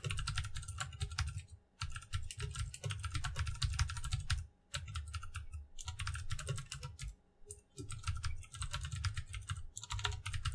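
Typing on a computer keyboard: quick runs of keystrokes, broken by a few short pauses.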